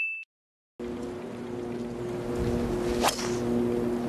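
A bell-like notification chime dies away in the first moment, then after a short silence comes steady outdoor background noise with a low hum. About three seconds in there is one sharp crack: a driver striking a golf ball off the tee.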